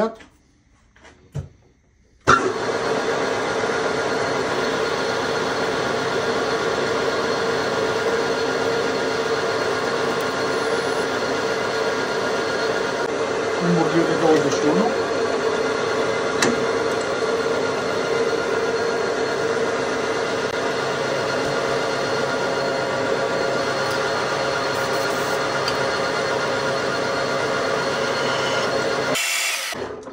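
Metal lathe switched on and running steadily under a drilling or boring cut in a metal part, starting abruptly a couple of seconds in and stopping shortly before the end, with a brief change in the cut about halfway.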